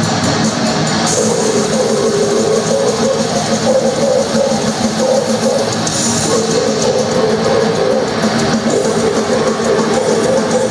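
Death metal band playing live: distorted electric guitars and a drum kit in a dense, loud, unbroken wall of sound, heard from the crowd.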